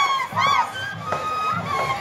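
Shrill, high-pitched cries from the dancers and crowd, then a flute melody coming in over steady drum beats: Andean carnival music with a hand drum.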